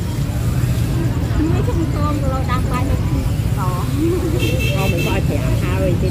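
Busy street-market ambience: a steady low rumble of motorbike traffic with voices of people talking nearby. A short high-pitched sound about four and a half seconds in.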